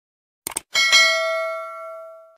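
Subscribe-button animation sound effect: a quick click about half a second in, then a notification bell chime ringing out with several tones and fading over about a second and a half.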